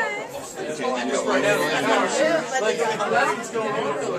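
Background chatter of a small crowd in a room, several voices talking at once with no clear words.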